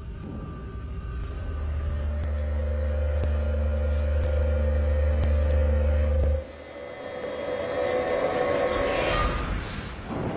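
Staged music and sound effects over a PA: a deep, steady rumble with a held tone above it builds and then cuts off suddenly about six seconds in. A brighter swell of sound then rises toward the end.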